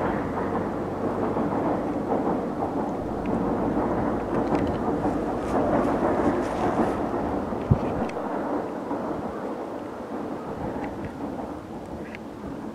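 Rumble of a train rolling on rails: new KiHa 5000 diesel railcars being hauled by a DE10 diesel locomotive, fading as the train moves away, with a single sharp knock about eight seconds in.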